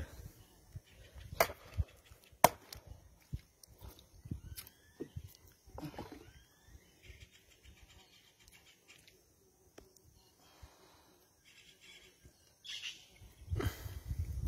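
Scattered knocks and thumps on a wooden canoe as a freshly caught tambaqui is handled and set down in the boat, the sharpest one about two and a half seconds in. A few short bird calls are heard a little before the middle.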